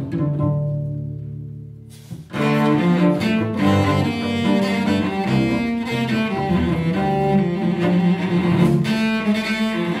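Two cellos playing a traditional Jewish tango. A low held note fades away over the first two seconds, then the bowed playing comes back in loudly and carries on.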